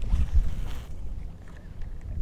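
Wind buffeting the microphone on an open boat, in low rumbling gusts that are strongest in the first second, with a fainter hiss over the same stretch.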